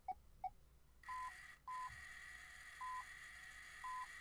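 Botley coding robot running its programmed moves while held in the hand. There are two short blips, then from about a second in the faint steady whir of its wheel motors, with a short falling two-note electronic beep at each step of the program, four of them about a second apart.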